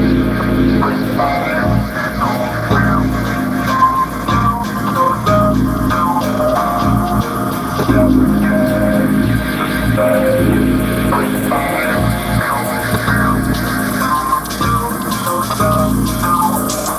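Electronic chillwave-style music with a steady bass line and short plucked melodic notes.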